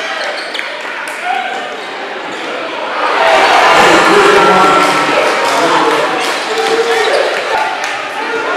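Live basketball game sound in a gym: the ball bouncing and a murmur of voices. About three seconds in, the crowd breaks into loud cheering, which fades over the next couple of seconds.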